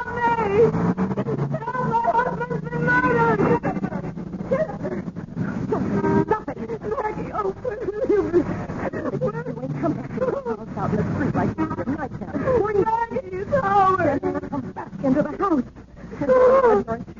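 Voices throughout, speech-like but with no words that the recogniser could make out.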